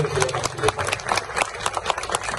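Audience clapping: many separate hand claps in an uneven, continuous patter.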